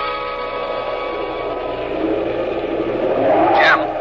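Radio-drama sound effect of a walkie-talkie: the last held tones of a musical bridge fade out, then a hiss of radio static builds, with a brief falling squeal near the end.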